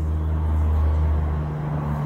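Low steady motor hum and rumble, its pitch shifting slightly partway through.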